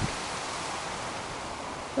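Steady, even outdoor background hiss in a garden, with no distinct event.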